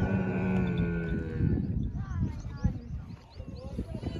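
A dromedary camel's long, low call at a steady pitch, ending about a second and a half in, followed by fainter, wavering voices.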